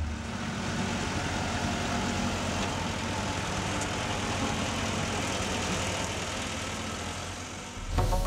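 Construction machinery engine running steadily, dipping slightly in level near the end.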